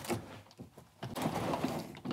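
BMW E30's sliding sunroof being opened: a short noise at the start, a pause of about half a second, then a second of sliding and clicking as the panel moves back.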